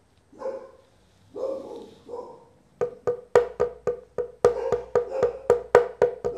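Three faint, muffled dog barks in the first two seconds or so. Then, from about three seconds in, a quick percussive music beat with a wood-block sound.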